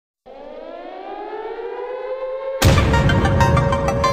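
Intro of a hip-hop beat: a siren-like tone slowly rising in pitch and swelling in loudness, then the full beat with drums drops in suddenly about two and a half seconds in.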